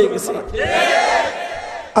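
A crowd of many men calling out together in one response lasting about a second and a half, starting about half a second in.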